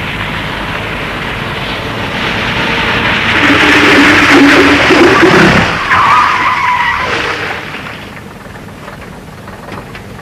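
Double-decker bus driven hard through a tight turn. Its engine and tyre noise build to a loud peak around the middle, with a short tyre squeal just after, then fade as the bus pulls away.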